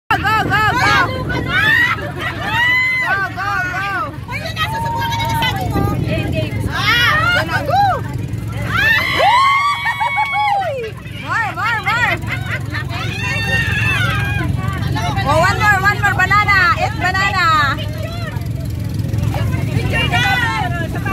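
A group of women talking and laughing over one another, several voices overlapping, above a steady low rumble.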